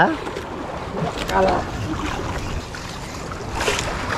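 Steady wind and sea noise around a small boat on choppy water, with a brief faint voice about a second in and a short rush of noise near the end.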